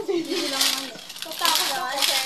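Young women talking in short, casual remarks, with a bright, sharp high edge to some sounds.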